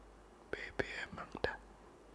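A man whispering close to the microphone, with sharp lip and mouth clicks, between about half a second and a second and a half in.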